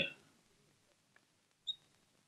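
A man's voice trails off, then near silence, broken near the end by one brief, faint, high-pitched chirp.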